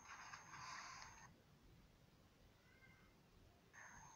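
Near silence between narrated sentences: faint hiss with a thin high tone for about the first second, then silence.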